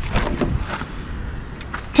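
A Chrysler PT Cruiser's door being opened by hand: a few faint clicks and rustles of the handle and latch, with a sharper click just before the end as the door swings open.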